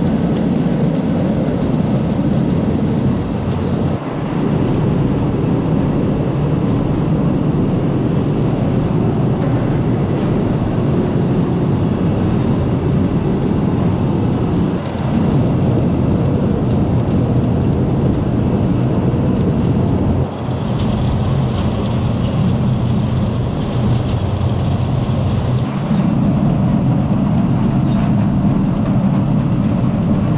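Onion grading line running: conveyor belts and their electric gear motors keep up a steady mechanical rumble as onions tumble along the belts and pour off the store elevator onto the heap. The sound shifts abruptly a few times.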